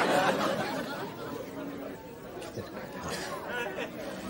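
Indistinct chatter of many people in a room, loud at first and dying down after about a second, with faint voices again near the end.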